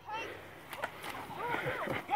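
Voices shouting on a youth football field as a play is snapped and run, with two short sharp clicks about three-quarters of a second in.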